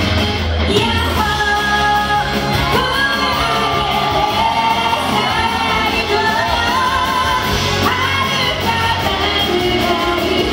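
A woman singing a pop-rock song live into a handheld microphone over loud amplified backing music, in a large hall.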